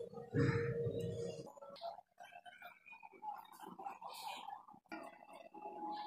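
Steel spoon scooping curry in a steel bowl, with irregular clinks and scrapes of metal on metal, and a louder dull bump about half a second in.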